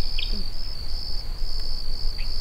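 Evening chorus of crickets: a steady high-pitched trill that pulses on and off, with a few short higher chirps at the very start and a low rumble underneath.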